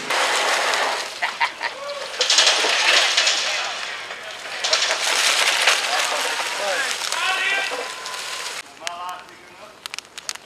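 A loud, steady rushing hiss with faint voices in it, cutting off suddenly about eight and a half seconds in. Near the end, the sharp pops and crackles of a burning wood campfire.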